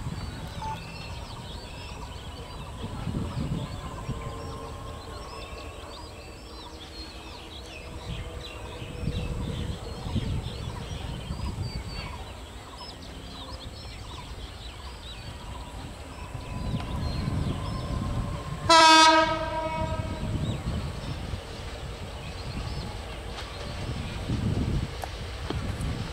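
Diesel locomotive approaching at low speed, its engine rumble swelling and easing. About nineteen seconds in it sounds one short, loud horn blast.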